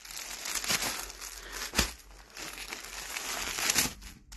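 Clear plastic wrapping on packaged bedding sets crinkling continuously as the packs are handled and shifted, with one sharp crackle a little before halfway.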